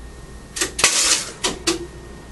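Incandescent light bulb bursting under a 6,000-volt surge: a quick string of sharp cracks and snaps, the loudest with a short crackling burst just under a second in, as the bulb glass breaks.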